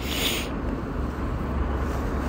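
Steady low rumble of vehicle engines, with a short hiss in the first half second.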